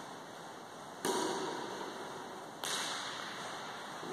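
Badminton racket striking a shuttlecock twice, about a second in and again about a second and a half later, each a sharp crack with a fading echo, over a steady hiss.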